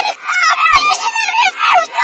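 A boy's shouting and screaming played backwards: a loud, rapid run of short, harsh pitched cries that bend up and down, sounding almost like honks.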